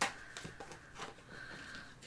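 Tarot cards being handled: a sharp click as the deck is split, then a few faint ticks and rustles of cards.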